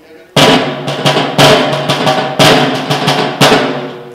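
Side drum with a brass shell and red hoops, beaten with sticks. It comes in suddenly about a third of a second in, with a loud accented stroke about once a second and lighter strokes between.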